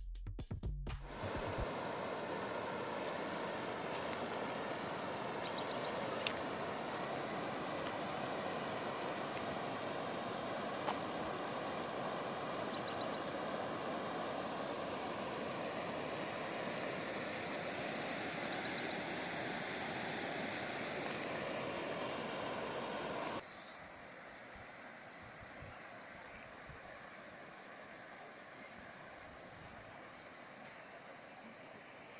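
River water rushing over shallow rocky rapids, a steady rushing noise. About 23 seconds in it drops suddenly to a quieter, softer rush.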